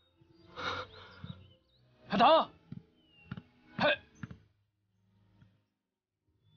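A man's short, breathy vocal sounds: a few separate gasps and brief unworded calls. The loudest comes about two seconds in, with a pitch that rises and falls.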